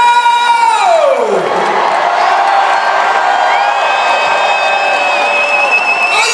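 Electric guitar played through a concert rig over a cheering crowd. A held note dives steeply down in pitch in the first couple of seconds. Then a rising bend leads into a long high note with vibrato near the end.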